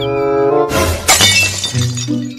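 Background music with a glass-shattering sound effect cut in about two-thirds of a second in, crashing and then dying away over about a second.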